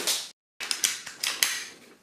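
A BB pistol shot with a sharp crack at the start, then, after a short break, a quick run of sharp clicks and clatter.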